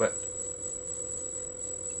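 Brushless gimbal pitch motor giving a steady single-pitched hum while it oscillates, the sign of its P gain being set too high.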